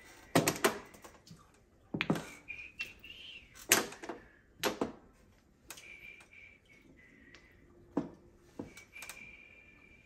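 Mahjong tiles clacking as players discard them onto the felt top of an automatic mahjong table: about ten sharp knocks, spaced irregularly a half second to two seconds apart.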